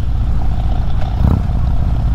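Harley-Davidson Road King's V-twin engine running steadily at low road speed, a low rumble, with one brief thump about a second and a half in.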